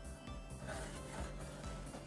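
Soft background music with steady sustained tones.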